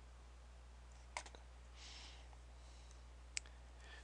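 Computer mouse clicks against near silence: one click with a couple of small ticks after it about a second in, and one sharp click near the end, with a faint brief rustle between them.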